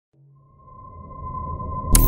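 Logo-intro sound effect: a steady high tone over a low rumble that swells steadily louder, ending in a sharp hit just before the music comes in.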